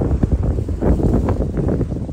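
Wind buffeting the microphone as a loud, uneven rumble, with scuffing footsteps on a snowy, rocky trail.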